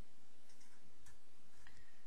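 Permanent marker drawing on paper: a few faint scratches and clicks as a line and a letter are drawn, over a steady low hiss.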